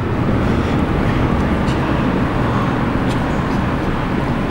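Steady low background rumble with no speech, and a couple of faint ticks from the marker on the whiteboard.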